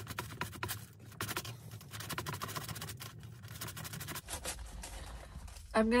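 Fork and knife sawing through a glazed doughnut and scraping against its cardboard box, a quick run of irregular scratches that stops about four seconds in.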